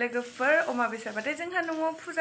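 Only speech: a woman talking steadily, with no other sound standing out.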